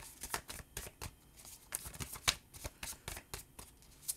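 A deck of tarot cards being shuffled by hand: a quick, irregular run of sharp card snaps and slaps, several a second.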